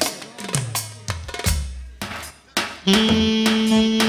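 Live band music: a drum break of separate snare and bass-drum hits, dropping away briefly, then a steady held note on a pitched instrument comes in about three seconds in.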